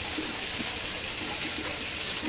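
Hilsa fish steaks and onion masala sizzling in hot oil in a frying pan, a steady hiss, with small spatula scrapes as the pieces are turned.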